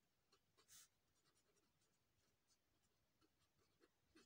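Faint scratching of a ballpoint pen writing on lined notebook paper, in short strokes, with one louder scratch just under a second in.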